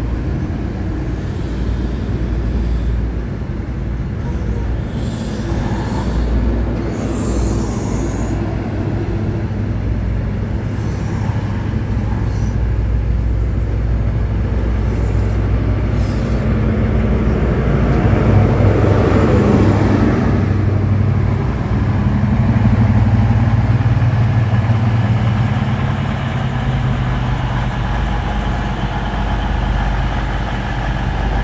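High Speed Train pulling out: its Mk3 coaches roll past on the rails over a steady diesel drone. The drone swells about two-thirds of the way through as the rear Class 43 power car's engine passes, then eases off.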